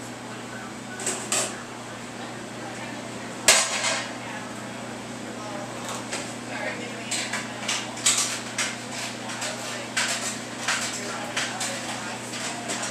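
Metal pans and utensils clattering in a commercial pizza kitchen: scattered knocks and clanks, the loudest about three and a half seconds in and a busy run from about seven seconds on, over the steady hum of kitchen equipment.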